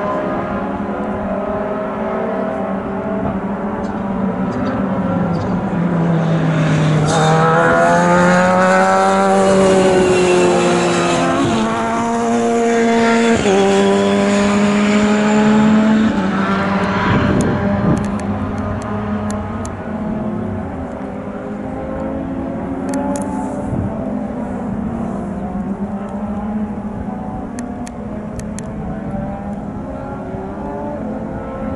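BRDC British Formula 3 single-seater race car engine at high revs on track. One car comes close and loud about a quarter of the way in. Its note falls, then climbs in steps through upshifts as it accelerates away, and it fades into quieter engine sound from farther round the circuit.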